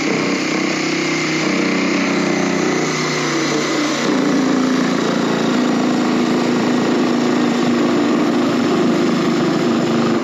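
Cordless reciprocating saw running steadily as its blade cuts at the top of a door frame, with a slight change in pitch about four seconds in.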